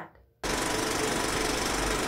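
Intro sound effect: a dense, rapid rattling buzz that starts suddenly about half a second in and holds steady, leading into the logo sting.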